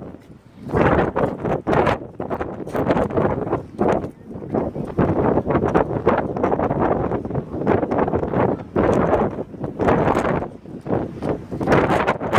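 Wind buffeting a phone's microphone in strong irregular gusts, a rumbling rush that swells and drops every second or so.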